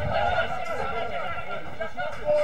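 Several voices shouting and calling out across an open football ground, with no clear words.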